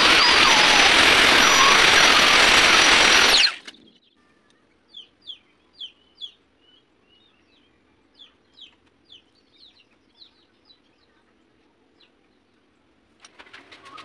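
Grinding wheel spun by the lathe, sharpening the tip of a small steel endmill: a loud, even grinding noise with a faint high whine that cuts off suddenly about three and a half seconds in. After it, faint short bird chirps come in a loose series.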